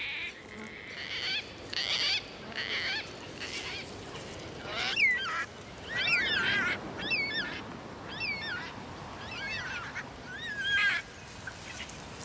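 Cockatoos calling: a string of separate calls, about one a second, each with a wavering pitch, over a steady rush of wind.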